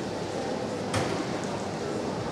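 Steady murmur of an indoor hall, with one sharp knock about a second in.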